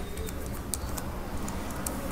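Typing on a computer keyboard: several separate key clicks over a steady low background hum.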